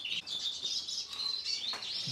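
Small birds chirping, several short high-pitched chirps and twitters.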